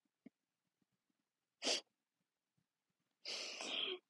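A young woman's quiet, breathy laughter: a short puff of breath about one and a half seconds in, then a longer breathy laugh near the end.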